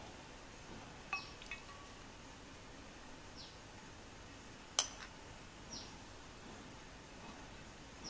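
Metal spoon clinking a few times against a glass dish while scooping out set jelly, the loudest clink a little before five seconds in, over a low steady hiss.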